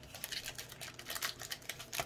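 Pokémon trading cards being handled and slid against one another as a stack is flipped through, giving a quick irregular run of small clicks and snaps.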